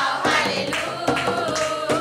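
A group of young women singing a Hindi Christian worship song together, as a choir.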